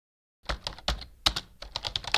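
A computer-keyboard typing sound effect: a quick, uneven run of keystroke clicks starting about half a second in.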